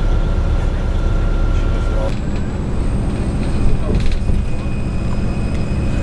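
Shuttle bus running, heard from inside the passenger cabin: a steady low rumble of engine and road, with a faint high whine that shifts to a higher pitch about two seconds in.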